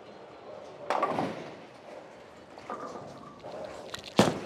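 Bowling alley background noise during a bowler's approach: a steady low clatter of the alley, with one sudden louder crash about a second in that dies away over about half a second.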